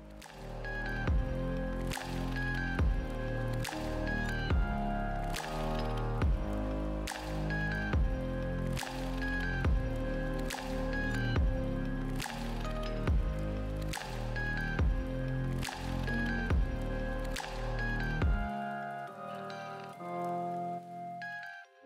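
Background music with a steady beat and a bass line. The bass drops out near the end.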